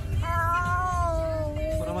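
A high voice holds one long, drawn-out note for about a second and a half, rising slightly and then sinking, over a steady low rumble.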